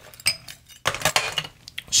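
Ice cubes dropped into a glass from a metal spoon: a few separate clinks and knocks of ice and metal against glass.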